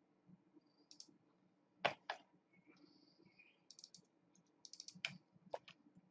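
Faint computer keyboard keystrokes and clicks, sparse at first, with a louder double click about two seconds in and quick runs of key taps in the second half.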